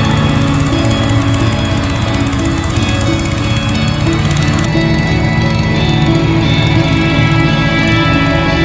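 Background music with sustained tones. The arrangement changes a little past halfway through.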